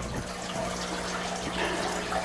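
Steady background of trickling running water over a low, even electrical hum.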